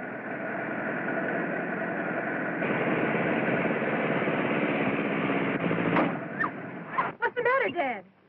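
Old film-soundtrack chase noise: a 1920s-style motor truck's engine running with the posse's horses galloping behind, growing louder about two and a half seconds in and breaking off around six seconds. Raised voices follow near the end.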